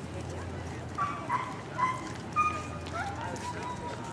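A Samoyed giving four short high yips in quick succession, then a long drawn-out whine, over steady background chatter.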